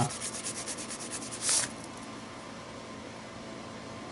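Glitter wax crayon scribbling on a journal page in quick back-and-forth strokes, a scratchy rubbing that ends in one longer, louder stroke about a second and a half in and then stops. The glitter in the crayon makes it drag strangely across the paper.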